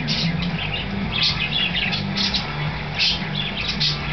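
Short, high bird chirps in quick irregular bursts, several a second, over a steady low hum.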